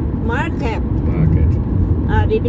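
Steady low rumble of a car's road and engine noise heard inside the cabin while driving, with a brief voice about half a second in.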